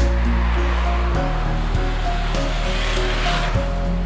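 Background music of held, soft notes, with a hiss-like wash of noise under it that swells over about three seconds and falls away shortly before the end.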